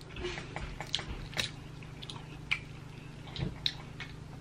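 A person eating snow crab leg meat: soft chewing with a few short, scattered mouth clicks and smacks.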